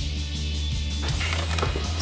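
Background music with a steady bass line, with short clicks in the second half.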